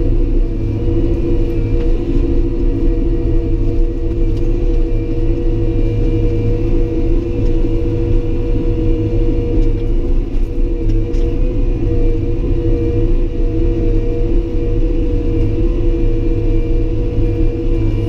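Caterpillar D5 bulldozer's diesel engine running at a steady speed under load, heard from inside the cab, with a low rumble from the tracks and machine.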